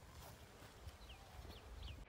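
Near silence outdoors: faint low wind rumble, with three short, falling chirps from a small bird in the second half.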